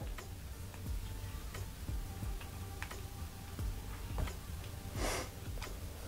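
Small scissors snipping through a ball python's leathery eggshell: soft, irregular clicks about every half second to a second, with a short hiss about five seconds in.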